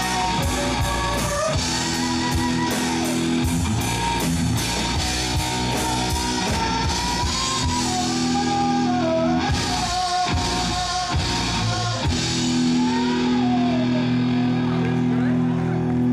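Live rock band playing an instrumental passage: electric guitars, bass, keyboard and drums, with a steady cymbal beat and a lead line bending in pitch. About twelve seconds in the drumming drops away and the band holds long, sustained chords.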